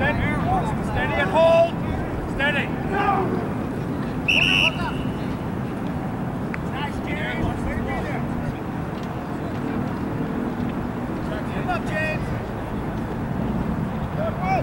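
Distant shouts and calls from rugby players and sidelines around a scrum, with one short, shrill referee's whistle blast about four seconds in, over a steady low rumble of wind on the microphone.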